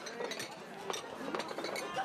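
Small porcelain soba plates and chopsticks clinking in a handful of short, scattered clicks, over a faint murmur of voices.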